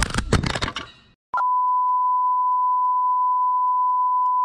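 About a second of loud clattering and knocks that cuts off abruptly, then a steady, single-pitched test-tone beep of the kind that goes with a TV 'please stand by' card, which starts and holds.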